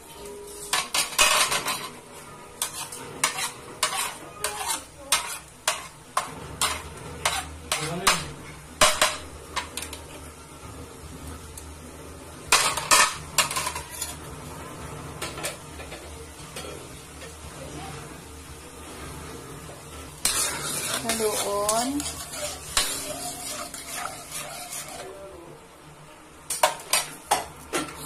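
A utensil stirring a thin sauce in an aluminium wok, clinking and tapping against the pan many times, over a faint sizzle from the cooking liquid.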